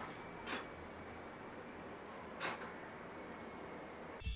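Two short puffs of breath blown onto a bare mechanical keyboard with its keycaps pulled, to clear the dust, about two seconds apart over a faint steady hiss.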